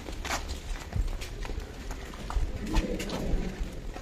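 Footsteps of a crowd walking along a path: irregular clicks and scuffs of shoes and sandals, with no steady rhythm.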